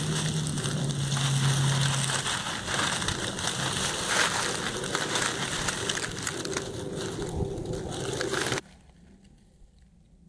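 Dry pine needles and leaf litter crunching and rustling under a hand as a porcini (king bolete) is dug and worked loose from the forest floor, a dense irregular crackle. It cuts off abruptly near the end, leaving near quiet.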